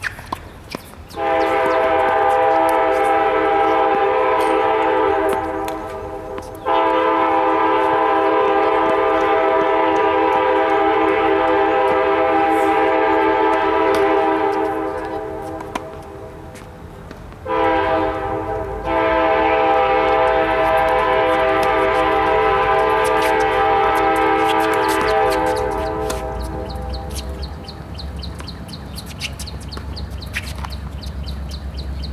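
Train horn sounding in four steady blasts, long, long, short, long, the pattern of a railroad grade-crossing signal. The last blast fades out near the end.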